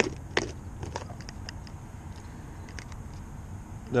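Clear plastic Plano tackle box being handled and opened: scattered light plastic clicks and rattles, the sharpest right at the start and another about half a second in, over a steady low hum.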